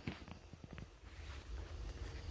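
Faint footsteps and rustling of cabbage leaves as a person in rubber boots steps between napa cabbage plants, with a few soft clicks in the first second.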